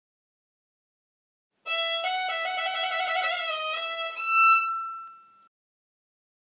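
Solo violin playing a short bowed phrase of several notes, starting about two seconds in. It ends on a higher held note that swells and then fades away.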